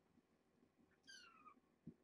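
A kitten's single faint mew, about half a second long and falling in pitch, about a second in, followed by a soft low thump just before the end.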